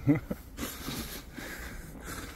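A man's brief vocal sound right at the start, then an even background noise haze.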